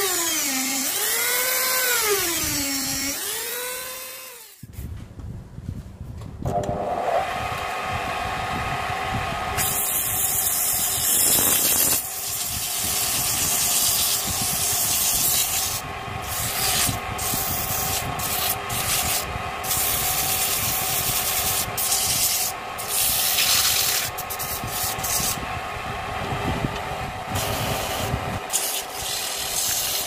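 A handheld rotary tool whines against a mahogany vase turning on a wood lathe, its pitch rising and falling as it cuts, and stops about four seconds in. After that the lathe runs with a steady hum while sandpaper is held to the spinning wood, a rough rubbing that swells and fades in strokes.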